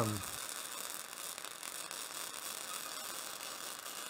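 Flux-core wire-feed welding arc, crackling and hissing steadily as the bead is run.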